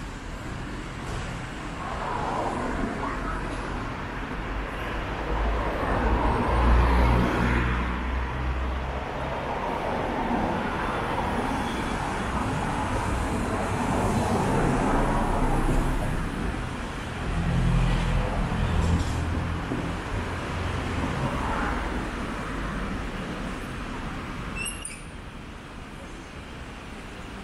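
City street traffic: cars passing on the road alongside, a steady hum of engines and tyres that swells twice as vehicles go by.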